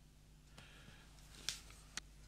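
Near-quiet room with a faint steady low hum and two short faint clicks, about a second and a half in and at the end, from watercolour brushes being handled and swapped.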